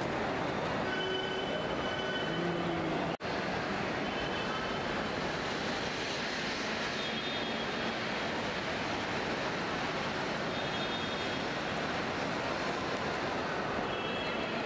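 Steady, even background din of traffic and people, cut by a sudden momentary dropout about three seconds in.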